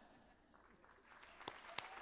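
Audience applause, faint at first and growing in the second half, with a couple of sharp individual claps near the end.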